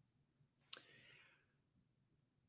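Near silence: room tone, with one short, faint click a little under a second in, followed briefly by a faint hiss.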